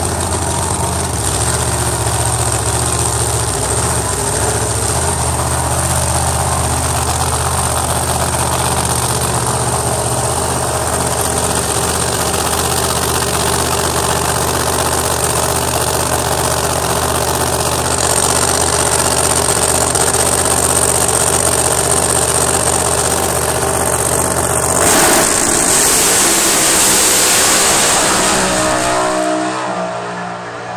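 Drag-racing Corvette's engine running steadily at the starting line, then launching at full throttle about 25 seconds in with a sudden loud blast that falls in pitch near the end as the car runs away down the quarter-mile.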